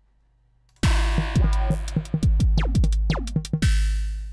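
Synthesized drum-machine pattern from FXpansion Tremor starting about a second in: a fast run of hits that each drop quickly in pitch over a deep low end, with thin high ticks between them. The snare voice is still only its oscillator tone, a triangle wave tuned around D sharp 2, giving the snare's tone and body with no noise layer yet. The pattern stops near the end and rings away.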